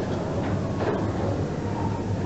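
Steady low mechanical hum of the dry dock's air-handling blowers, with a few faint soft knocks.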